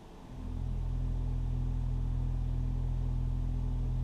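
Large pipe organ sounding a low held note or chord, probably on the pedals, at the start of a piece. It comes in about half a second in and holds steady.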